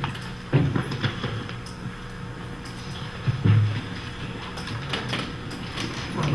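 A few low thumps and knocks from papers and a microphone being handled at a meeting table, over a steady room hum. The strongest bumps come about half a second in and at three and a half seconds.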